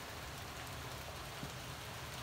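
Steady rain falling, an even hiss of drops with no break.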